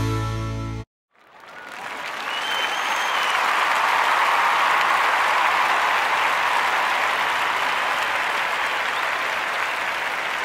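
The last note of a fiddle-and-guitar tune fades out under a second in. After a brief silence, applause swells up and holds steady, with a short whistle about two and a half seconds in.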